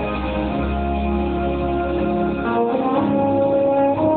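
Live vocal music: a female soloist singing a sacred song over held chords, with a deep bass note that drops out about two and a half seconds in.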